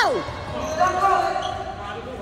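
Pickup basketball game in a gym: a shouted call trails off at the start, then the ball bouncing and players moving on the court under fainter voices.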